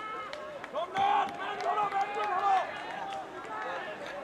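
Several voices calling and shouting across an outdoor football pitch, players and onlookers at once, loudest about a second in, with a few short sharp knocks among them.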